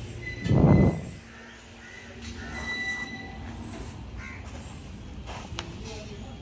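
A short, loud, dull thump about half a second in, over steady outdoor background noise, with a few faint high calls after it.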